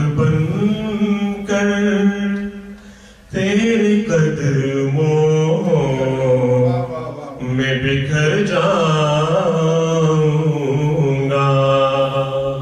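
A man's voice chanting unaccompanied in long, held, wavering phrases. It breaks off briefly about three seconds in and dips again about seven and a half seconds in.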